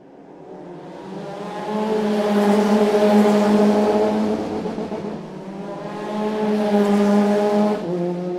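Race car engine note at high revs, swelling loud twice a few seconds apart, as when race cars pass.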